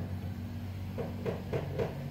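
Steady low machine hum, with a few faint short clicks and knocks in the second half.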